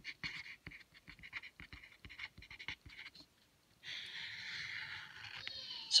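Pen writing on paper: a run of short scratchy strokes like letters being written, then one long continuous stroke of about two seconds near the end as a line is ruled.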